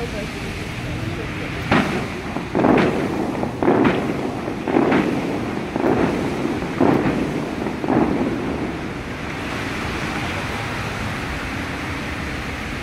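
Bellagio fountain water shooters firing in a run of about seven sharp whooshes, roughly a second apart, each trailing off into the hiss of spray. Steady crowd and water noise underneath.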